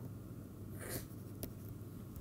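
Faint scratch and light tap of a stylus writing on a tablet screen: one short scratch about a second in and a small click just after, over a low steady room hum.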